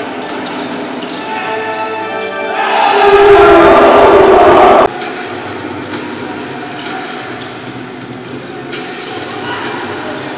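Live basketball game sound: a basketball being dribbled on a hardwood court amid arena noise. Music plays in the first couple of seconds, and a loud swell of noise rises and cuts off abruptly about five seconds in.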